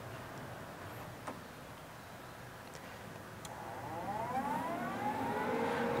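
Lincoln Electric Invertec 170TPX inverter welding machine powering up after a faint click about a second in, with a whine that rises in pitch and grows louder over the last couple of seconds.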